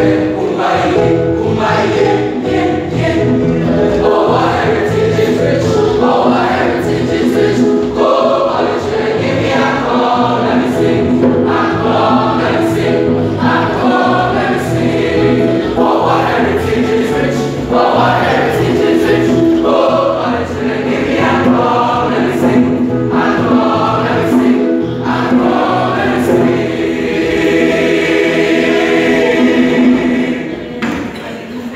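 A large school choir of boys and young men singing together in harmony, sustained chords moving continuously.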